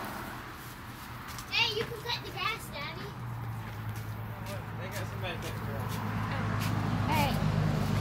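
Short child vocal sounds in the first few seconds and again near the end, over faint clicks and a low steady hum that slowly grows louder through the second half.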